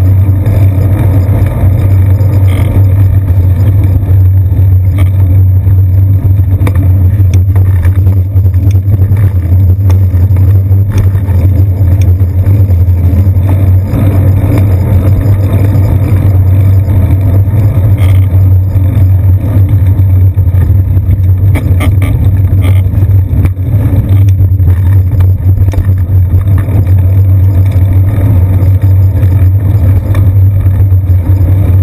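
Steady, loud low rumble of a moving bicycle picked up by a seat-post-mounted GoPro Hero 2 in its housing: wind and road vibration, with street traffic behind it. A few short clicks break through from bumps in the road.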